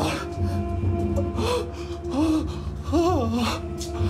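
A man's sharp gasp, then anguished, wavering wailing cries that rise and fall in pitch, over a sustained, droning music score.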